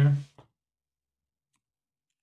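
A man's voice ending a word in the first half second, then near silence.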